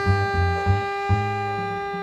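Tenor saxophone holding one long, steady note through the whole stretch, over short low double bass notes, one of them held a little longer near the middle.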